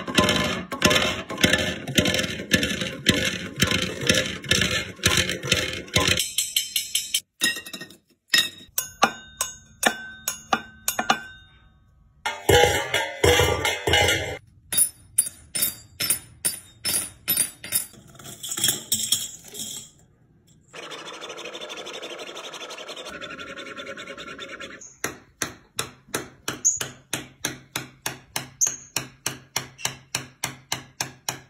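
A green-cheeked conure tapping and pecking its beak on a series of household objects (plastic dish, floor, wooden table), giving runs of quick clicks and knocks whose tone changes with each surface. Near the end it knocks on a wooden tabletop at about three taps a second.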